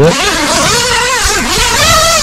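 Gazelle T4 Plus tent's inner door zipper being unzipped in one continuous pull, a loud rasp whose pitch wavers up and down as the pull speeds up and slows.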